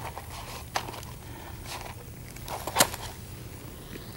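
Quiet room tone with a steady low hum and a few faint clicks, the sharpest one near three seconds in.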